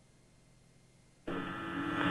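A faint hiss, then about a second in an air traffic control radio channel abruptly opens with a steady hum and static, its sound narrow and cut off in the treble, just before the controller's voice comes through.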